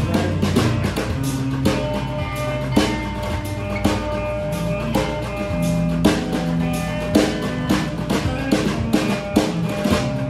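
Instrumental rock jam on solid-body electric guitar and drum kit, the drums keeping a steady beat under sustained guitar notes.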